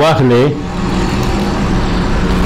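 A man's voice for the first half second, then a steady low hum with a hiss of background noise through the pause.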